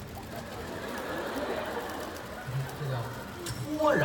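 A man's voice over a stage microphone: a few low hummed tones in the second half, then a sliding vocal tone that falls in pitch near the end.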